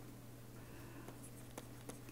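Stylus writing faintly on a pen tablet: a soft scratch of the pen tip followed by two light taps near the end, over a steady low hum.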